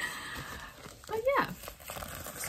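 Rustling of a plastic bubble mailer being handled, then a short wordless vocal sound that glides up and back down in pitch about a second in.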